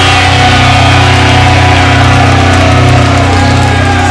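Pop-punk band's recording holding one long sustained chord on electric guitars and bass, ringing steadily as the song ends.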